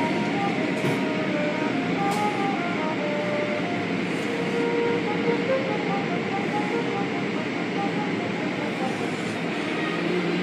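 Automatic car wash running, heard from inside the car: spinning cloth brushes sweeping over the body and windows while water sprays against the glass, a steady, continuous rush of noise.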